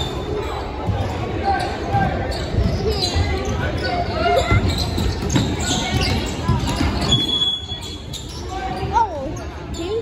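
Basketball dribbled on a hardwood gym floor, repeated bounces echoing in a large hall under spectators' chatter. A short referee's whistle blast about seven seconds in, after which the bouncing dies down.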